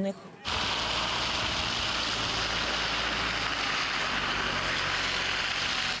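Steady, loud rushing din of a street clash, with no distinct events standing out. It starts suddenly about half a second in and cuts off abruptly.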